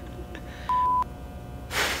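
A short electronic beep: one steady high tone lasting about a third of a second, starting and stopping sharply. Near the end comes a sharp breath.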